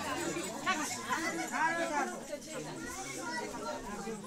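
Several people talking at once, voices overlapping in a small crowded room.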